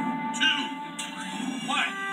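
A film trailer soundtrack playing from a television: music with a couple of short voice sounds, heard through the TV's speaker in the room.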